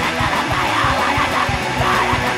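A loud punk rock song played in full band: distorted electric guitar and drums, running steadily with regular drum hits.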